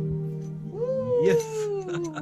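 The last chord of an acoustic guitar rings on and fades. Then, a little past a third of the way in, a drawn-out exclamation begins from a person's voice, sliding slowly down in pitch. A brief slap comes near the middle as two hands meet in a high five.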